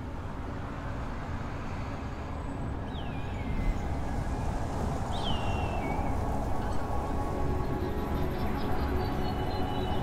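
City traffic noise, swelling slowly, with two short falling whistle-like tones about three and five seconds in, under faint music.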